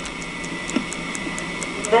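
Steady hiss and hum of a VHS tape played back and re-recorded, with a thin steady whine and faint, even, high ticks about four times a second.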